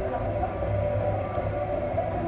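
Muffled, lo-fi recording of a hardcore punk band playing live, a continuous wall of distorted guitar and bass.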